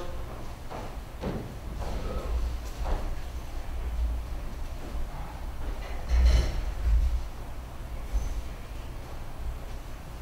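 Steady low room rumble with a few soft knocks and low thumps, the loudest about six seconds in.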